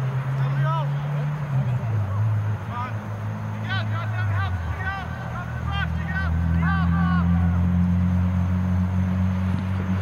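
Distant shouting from players on a soccer field, short calls scattered through the clip, over a steady low motor drone. The drone steps down in pitch about two seconds in and again near the middle, then rises a little about six seconds in.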